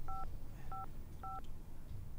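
Telephone keypad tones: three short two-tone beeps about half a second apart, the same pair of tones each time, as keys are pressed on a handheld phone. A low background hum runs under them.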